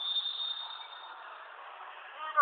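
A referee's whistle blows once, a single steady high note lasting about a second, the signal for a penalty kick to be taken. Faint hall ambience follows.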